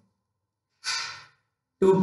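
A man's short audible intake of breath through the mouth, a brief hiss that fades out, in a pause between spoken phrases; his speech starts again near the end.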